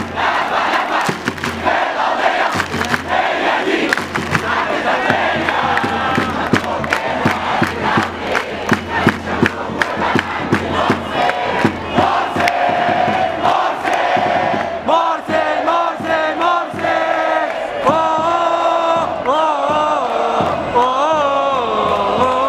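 A large crowd chanting an Arabic protest slogan in unison, with sharp claps through it. In the second half a single loud voice stands out more clearly over the crowd.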